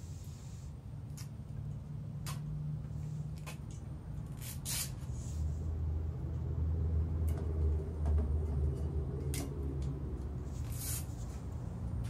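Butane gas canisters and their packaging being handled on a table: scattered light clicks and taps, over a low rumble that grows louder in the middle.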